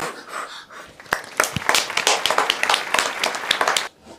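Children blowing out a birthday candle, a short breathy puff, followed about a second in by several people clapping for nearly three seconds, stopping just before the end.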